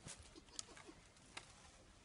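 Near silence, with faint rustling and two soft clicks as garments and plastic packaging are handled.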